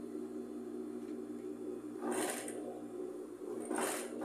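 Industrial sewing machine running steadily as it stitches through thick ruffled knit fabric, briefly louder and noisier about two seconds in and again near the end.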